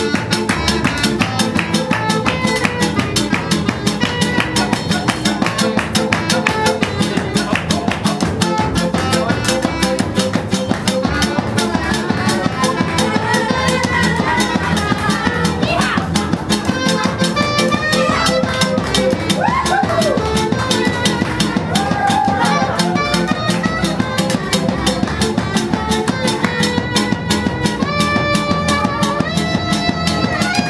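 Live acoustic band playing a fast, driving tune: strummed acoustic guitar and a hand drum keep a dense, even beat over upright double bass, while a clarinet carries a bending melody line.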